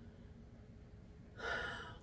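Quiet room tone, then about one and a half seconds in a woman's short, audible in-breath.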